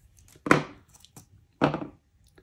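Two short, sharp clacks about a second apart, with a few faint ticks between them, from handling red side cutters and decoder wires.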